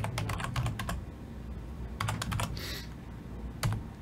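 Typing on a computer keyboard: a quick run of keystrokes at the start, a few more about two seconds in, and a single key press near the end.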